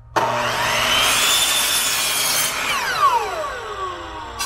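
Metabo compound miter saw starting up and cutting through a wooden board, then its blade winding down with a falling whine after the trigger is released.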